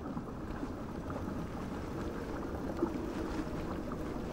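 Steady low watery wash of underwater ambience, with faint soft tones wavering a little about three seconds in.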